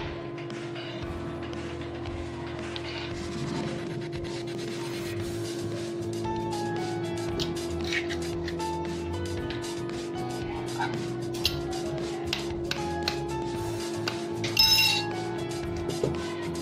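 Background music with a steady hum under it, and a sharp crack near the end as an egg is tapped against a glass bowl.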